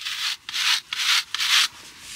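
Stiff-bristled horse grooming brush scrubbing hard over the hair of a muddy white leg: four quick strokes in a row, each a short bristly scrape.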